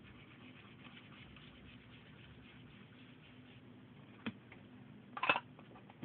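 Faint, fine scratchy rubbing as ink is worked onto a paper tag by hand, colouring in its centre. About four seconds in comes a small sharp click, and a second later a louder knock.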